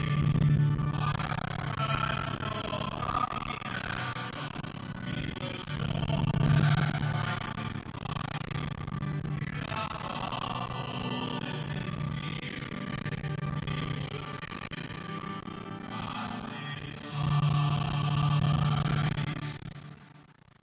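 A hymn sung with guitar accompaniment, ending abruptly at the very end.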